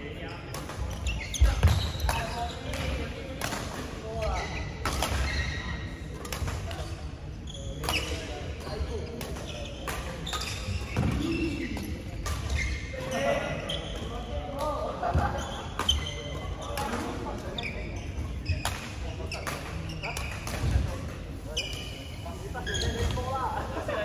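Badminton rackets striking shuttlecocks: a series of sharp smacks at irregular intervals, the loudest about a second and a half in.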